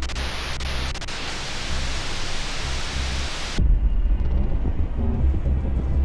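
Television static hiss, with two brief high tones near its start, cutting off suddenly about three and a half seconds in. A low, rumbling music drone follows.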